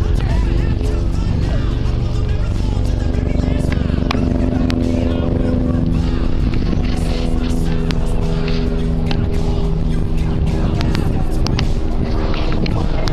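Wind buffeting the microphone in a steady low rumble, with music of held chords over it and scattered crackles.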